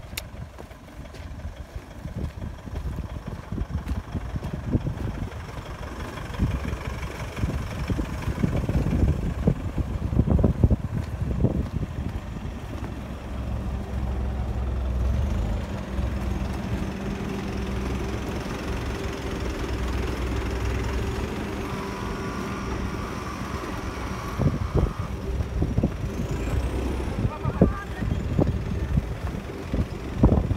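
Minibus engine idling steadily for about ten seconds in the middle, with wind buffeting the microphone throughout.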